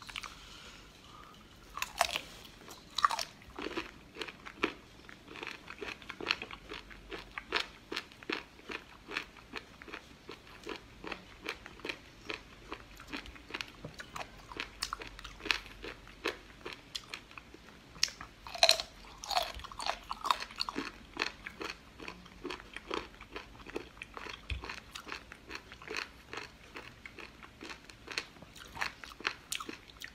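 Close-miked chewing of seafood: irregular wet and crunchy bites and mouth clicks, many small sharp clicks a second, with no speech.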